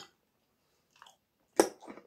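Close-miked eating sounds: a person chewing, with a sharp loud noise about one and a half seconds in as a metal fork picks food from a glass bowl, and a smaller one just after.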